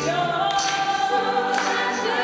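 A hymn sung by the congregation and choir, a sustained melody moving from note to note.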